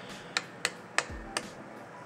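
Four sharp clicks, about a third of a second apart: a finger pressing the control-panel button of a mini evaporative air cooler to step it through its fan-speed stages. The cooler's fan runs faintly and steadily underneath.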